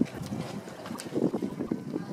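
Wind buffeting the microphone in uneven gusts, over faint outdoor background noise.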